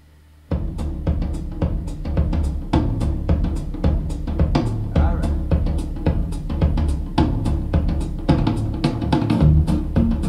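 Drum-led music with a full drum kit, played from a cassette on a Kenwood KX-2060 stereo cassette deck. It comes in suddenly about half a second in.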